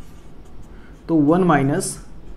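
Marker pen writing on a whiteboard: a faint scratching of the felt tip on the board, heard mainly in the quiet first second before a man speaks.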